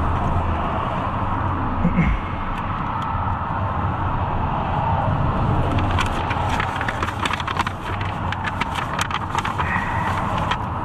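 Steady low rumble of a car with engine or traffic noise around it. From about six seconds in, papers are handled and rustle with many crisp clicks.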